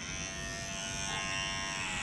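Handheld electric hair clippers running with a steady buzz.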